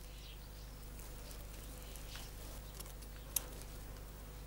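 Faint rustling of stiff berceo grass fibres being plaited by hand, with a few short sharp ticks as the strands are pulled and crossed, the sharpest a little after three seconds. A steady low hum runs underneath.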